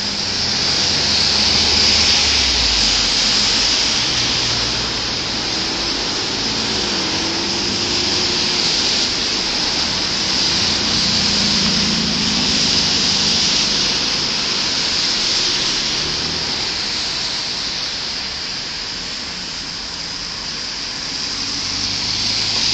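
Street traffic on a wet road: a steady hiss of tyres on wet pavement with engines running low underneath, swelling as cars pass close.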